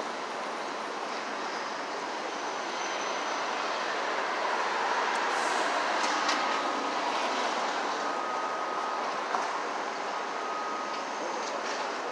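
Steady city street noise from traffic, swelling to its loudest about halfway through and easing off again, with a few faint clicks.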